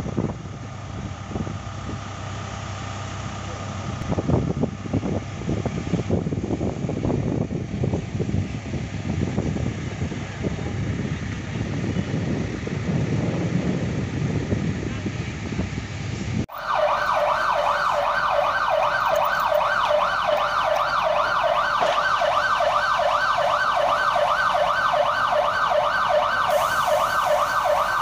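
A rough outdoor rumbling noise, then about halfway through a sudden cut to an emergency-vehicle siren wailing in rapid yelp cycles, about two to three a second, which is the loudest sound.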